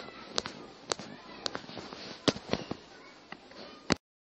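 About eight sharp, separate clicks at irregular intervals over a faint background hiss, the last one right before the sound cuts off.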